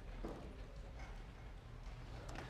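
Faint lecture-hall room noise with a couple of soft knocks or shuffles, about a quarter second in and again at one second.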